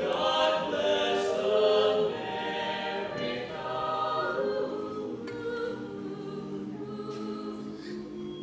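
Mixed-voice a cappella ensemble singing sustained chords in close harmony under a reverberant dome, loudest in the first two seconds, then softer.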